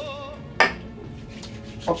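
A can of cooking spray set down on a hard countertop: one sharp knock about half a second in, just after a held, wavering vocal note fades out.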